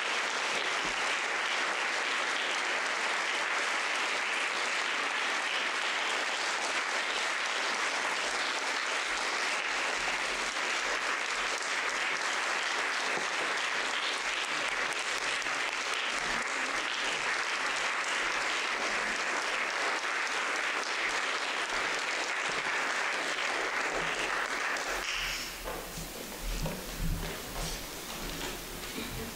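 Audience applauding steadily at the end of a talk. The applause dies away about three seconds before the end, leaving quieter room noise.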